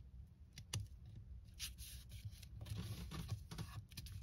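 Hands pressing a freshly glued paper card onto a paper page and smoothing it flat: faint rubbing and rustling of paper, with a sharp click just under a second in.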